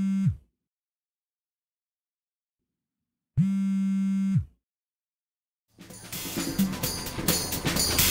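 A mobile phone vibrating on receiving a text message: a steady low buzz that stops just after the start, then a second buzz about a second long from about three and a half seconds in, each sagging in pitch as it stops, with silence between. Music with a drum kit fades in near the end and becomes the loudest sound.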